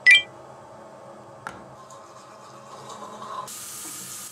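Bathroom tap turned on about three and a half seconds in, water running into the sink as a steady hiss. Before it there is a short high chirp at the very start and a single click about a second and a half in.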